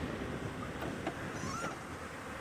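Open safari vehicle driving along a dirt road: steady low engine and tyre rumble with wind noise on the microphone.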